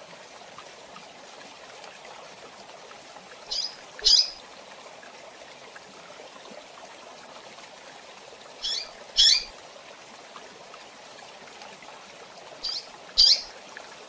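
Female double-collared seedeater (coleiro) calling: three pairs of short, high chirps about every four to five seconds, each pair a softer note followed by a louder one.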